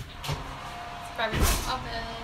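An oven door being opened, with a small knock and then a louder clunk about one and a half seconds in, over a faint steady hum.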